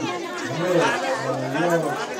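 Crowd chatter: several voices talking over one another.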